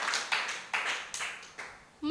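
Small audience clapping in a steady rhythm of about three claps a second after a punchline, fading out shortly before the end.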